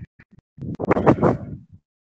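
Garbled, scratchy speech through a breaking-up video-call connection: a few short digital clicks, then about a second of mangled voice that cuts off abruptly to dead silence, a sign of a network disconnection.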